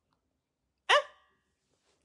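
Near silence, broken about a second in by a man's single short interjection, 'Hein?'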